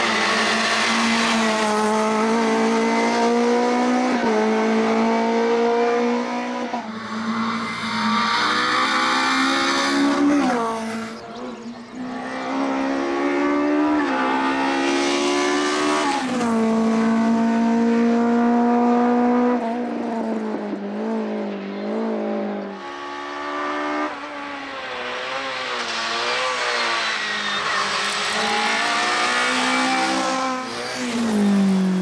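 Škoda Felicia Kit Car's engine at full racing revs, climbing in pitch through each gear and dropping back at each upshift, over and over.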